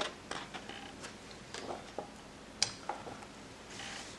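A page of a hardcover picture book being turned by hand, with soft paper rustles and light clicks. The sharpest click comes about two and a half seconds in.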